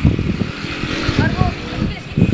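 A boy talking, with a low rumble of background noise underneath.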